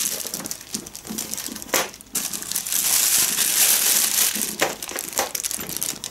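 Grey plastic postal mailer bag crinkling and rustling as it is handled and opened, with a few sharper crackles about two seconds in and again near the end.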